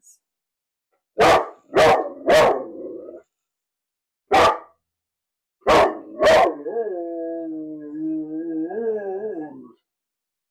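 A dog barking six sharp times in uneven groups, then a long howl of about three seconds that wavers and sinks in pitch.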